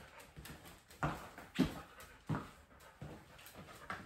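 A dog and a person moving across a tile floor: soft steps and scuffs, with three clearer knocks about one second, one and a half seconds and just over two seconds in.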